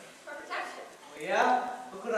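An actor's voice speaking stage dialogue in two short phrases, the pitch sliding sharply up and down; the second phrase comes about a second in and rises.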